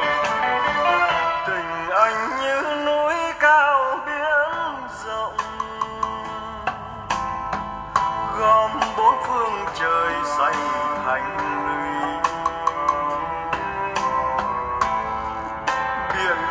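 A Vietnamese song's instrumental passage, with a wavering, sliding melody line over steady accompaniment. It is played through a pair of bare, unboxed 16.5 cm Japanese woofers that are being tested lying on the floor.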